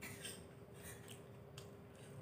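Faint chewing of a fried aloo chop (potato cutlet), a few soft crunchy clicks of the crisp crust as it is chewed.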